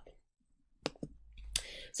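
Two short, sharp computer mouse clicks close together about a second in, advancing a presentation to the next slide.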